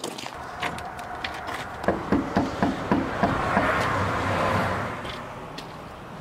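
Knuckles knocking on a front door: a quick run of about seven raps about two seconds in. A broad rushing noise follows, swelling and then fading.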